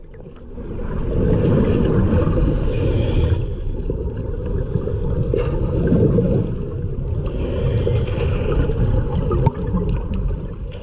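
Strong spring current rushing past an underwater camera in its housing: a loud, muffled, low rushing and gurgling that swells about a second in and stays up.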